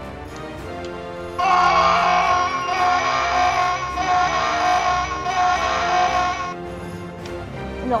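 Electronic sound box of a Kenner Lost World Mobile Command Center toy playing a high alarm-like electronic tone that pulses a little under twice a second. It starts abruptly about a second and a half in and cuts off after about five seconds.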